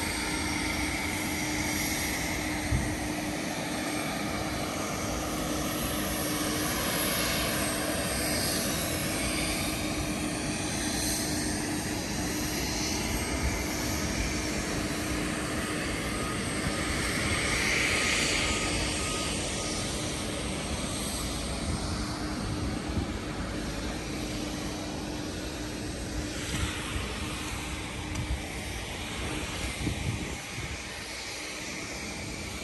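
Jet airliner engines running on the airport apron: a steady rush with sweeping rises and falls in pitch, swelling to its loudest about two-thirds of the way through. A steady low hum sits underneath for the first half.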